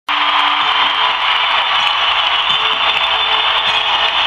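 Large arena crowd screaming and cheering, loud and steady, with a few faint held musical notes underneath.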